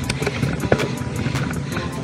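Background music with a steady beat over mountain bike riding noise: tyres rolling on a loose gravel-and-dirt climb.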